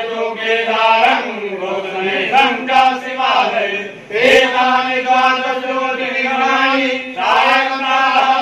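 Group of men chanting a Hindu devotional prayer in unison, holding long steady notes, with short breaks for breath between phrases, the clearest about four seconds in.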